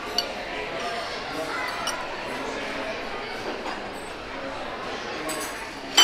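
Restaurant dining-room hubbub: a steady murmur of other diners' voices, with occasional clinks of cutlery and dishes and a sharper clink at the end.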